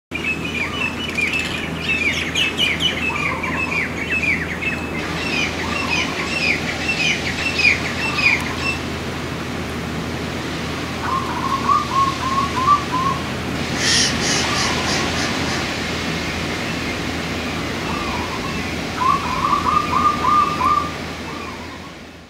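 Birds chirping and singing: a run of repeated falling chirps in the first half, then two short trills of quick repeated notes later on, with a sharper call about two-thirds of the way through, over a steady low background.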